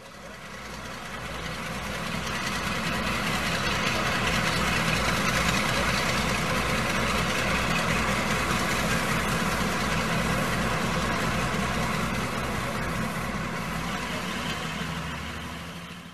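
An engine idling with a steady, regular low throb, fading in over the first couple of seconds and fading out near the end.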